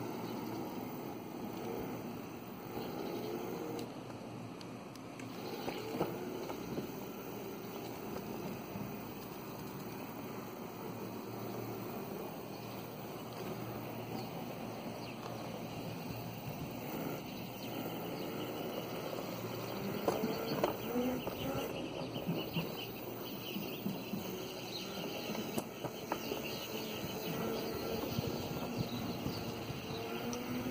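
Homemade go-kart driven by two brushless hoverboard hub motors on e-bike controllers, moving slowly: a motor whine that rises and falls in pitch several times as the throttle and speed change, over a steady rolling noise.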